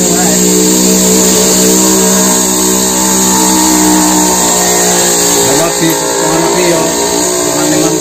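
Two-stroke chainsaw running at high, steady revs, then wavering about five and a half seconds in.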